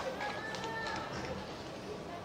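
Indistinct distant voices carrying across an open football ground over a steady low background hum, with no clear words.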